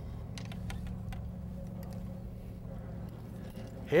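A few light clicks and knocks in the first second as a fishing rod is picked up off a boat's deck, over a steady low hum.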